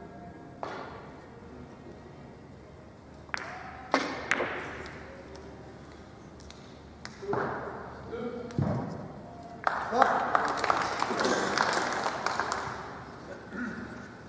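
Carom billiard balls in a three-cushion shot: the cue strike, then sharp ball-on-ball clicks and cushion knocks spread over several seconds. After the point is made, a few seconds of audience applause in the hall, the loudest part.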